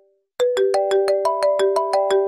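Smartphone ringtone from an incoming call: a quick melodic run of chiming notes, about six a second, starting about half a second in and ringing on as the phrase repeats.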